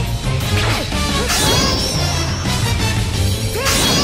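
Anime battle soundtrack: loud, driving music layered with fight sound effects, with crashing impacts and a couple of rising energy-blast whooshes, one about a second in and one near the end.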